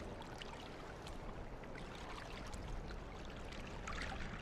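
Faint sea water lapping and sloshing at the surface, a steady wash with scattered small splashes.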